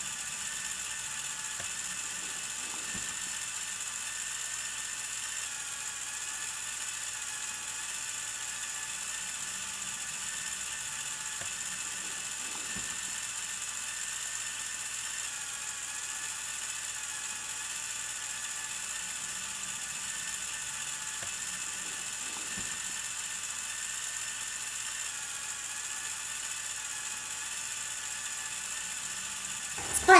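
Toy construction-set mobile crane's electric motor and plastic gear train running steadily under load, winding the winch to hoist a 350 g bucket of parts. A few faint knocks sound during the lift.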